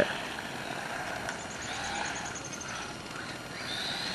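Low, steady outdoor background hiss. A short run of faint high ticks, falling slightly in pitch, comes in about a second in and lasts about a second.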